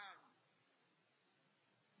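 Near silence after a trailing spoken 'um', broken by one short, sharp click a little over half a second in and a fainter tick about a second later.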